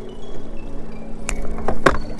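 Low steady rumble of a boat's small outboard motor mixed with wind, with a few sharp taps near the end as fishing lines and gear are handled.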